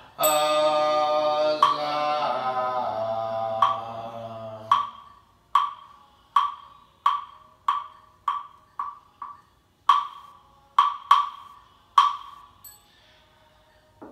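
A group Buddhist chant with long held notes, with a wooden fish (muyu) knocked now and then under it. About five seconds in the voices stop and the wooden fish is struck alone in a run of knocks that speeds up, then a few last spaced strikes. A small bell rings once right at the start.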